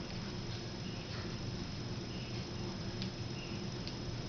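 Flat iron being drawn down a section of hair: faint rustling with a few soft ticks over a steady background hum.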